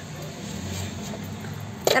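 Steady low hum and hiss of background noise inside a car cabin, with a sharp click near the end just as a woman's voice begins.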